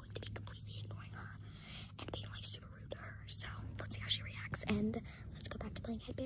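A child whispering close to the microphone, breathy and hissy with almost no voice.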